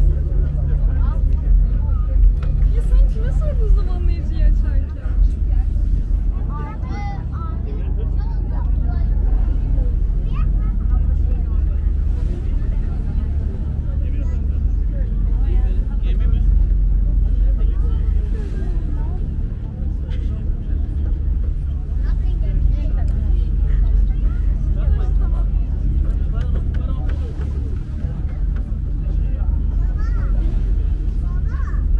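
Passenger ferry's engine running with a steady low drone under way, heard from the open deck.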